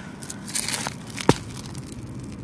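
Crinkling and rustling of a fertilizer package being handled, with one sharp click about a second and a quarter in.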